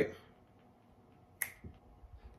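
A single sharp click, like a snap, about one and a half seconds in, with a faint low thump just after it.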